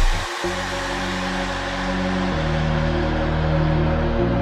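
Electronic dance music from a DJ mix going into a breakdown. The heavy bass cuts out just after the start. Sustained synth chords follow, changing about every two seconds over a hiss of noise.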